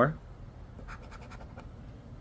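Scratch-off lottery ticket being scratched: quiet, irregular short strokes as the coating is rubbed off to uncover a number.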